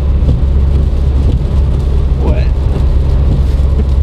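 Steady low drone of a Citroën C4 Grand Picasso HDi diesel cruising at motorway speed, about 118 km/h, heard from inside the cabin: engine and tyre noise on a wet road.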